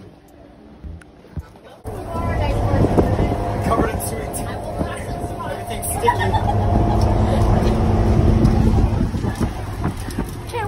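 Steady low rumble of engine and road noise inside a moving school bus at highway speed, starting suddenly about two seconds in.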